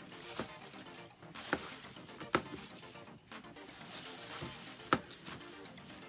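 Plastic food-prep gloves crinkling as slices of bread are handled on a plastic cutting board, with about four short light taps spread through.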